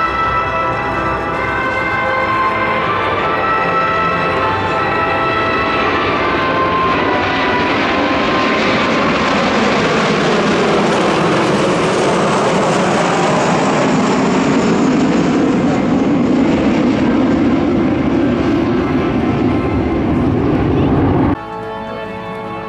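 Six Kawasaki T-4 jet trainers flying low overhead in formation: the jet noise builds over several seconds, peaks, and drops in pitch as they pass, then cuts off abruptly near the end. Music plays underneath, clearest in the first few seconds.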